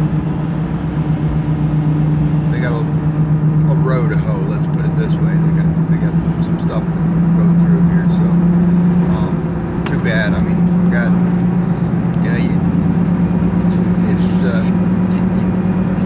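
Pickup truck engine and road noise heard inside the cab while driving: a steady low drone that creeps slowly up in pitch.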